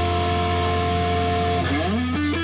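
Live blues-rock band with electric guitar and bass holding a sustained, ringing chord over a strong low bass note. Near the end the guitar breaks into a quick upward slide that leads into a climbing run of notes.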